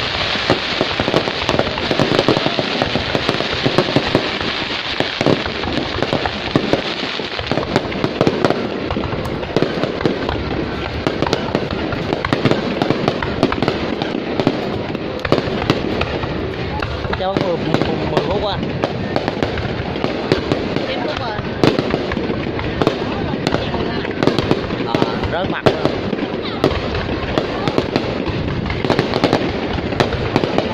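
Aerial fireworks going off in a continuous barrage: a dense, unbroken crackling and popping of many shells bursting.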